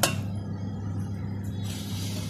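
A glass bowl clinks once right at the start, its ring dying away quickly, over a steady low hum.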